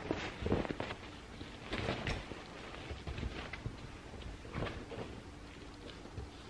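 Handling noise: a string of soft knocks and rustles as the camera is picked up and moved about.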